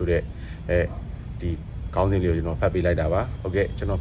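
A man speaking in Burmese with a short pause about a second in, over a steady high drone of crickets.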